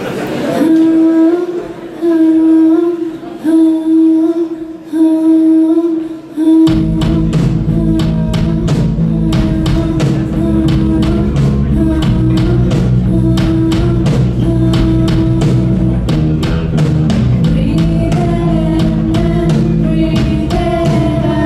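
A woman sings the opening lines alone in short held phrases; about seven seconds in, a rock band comes in with a drum kit and electric guitars and plays on under her voice.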